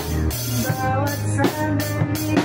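Acoustic drum kit played along to a recorded pop-rock song, with snare and cymbal strokes about every 0.4 s over the track's pitched guitar and bass.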